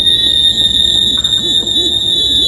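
Loud, high-pitched screech held on one shrill pitch with a slight waver: a sound effect of an inhuman scream.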